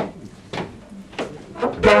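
A count-in of sharp clicks about every 0.6 s sets the tempo. Near the end a traditional New Orleans jazz band comes in, with trombone and cornet over the rhythm section.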